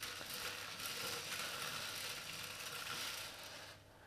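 Smarties (sugar-shelled chocolate sweets) rattling and clicking against each other and a dish as they are stirred by hand, a dense steady rattle that stops just before the end.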